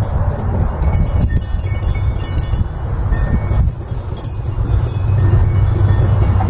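Wind chimes ringing irregularly in the breeze, many short high tones overlapping, over a steady low rumble.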